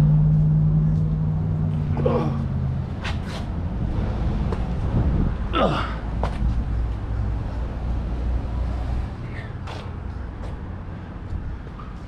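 1950s Ford Fairlane 500's engine idling, heard from behind the car at its dual exhaust: a steady low hum that softens to a lower rumble about two seconds in and fades away about nine seconds in.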